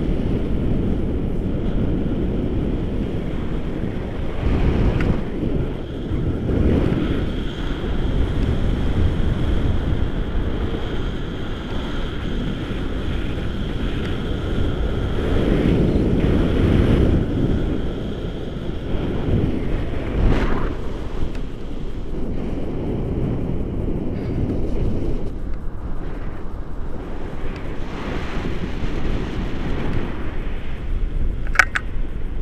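Wind buffeting an action camera's microphone in tandem paraglider flight: a loud, low noise that swells and eases in gusts.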